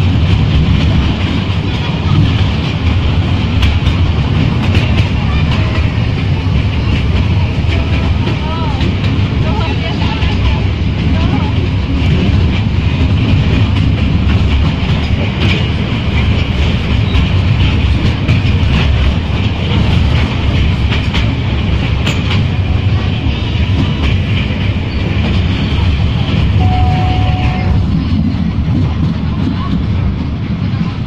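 Small amusement-park tourist train running steadily along its track, heard from aboard an open carriage as a continuous rumble of the running gear. A short steady tone sounds once near the end.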